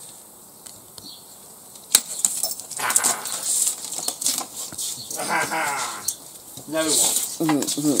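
A single sharp knock about two seconds in, then people's voices in short stretches, ending in laughter.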